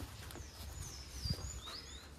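Faint small-bird chirps: a few short, high-pitched whistles, some falling and some rising in pitch, over a low outdoor hum with one small knock.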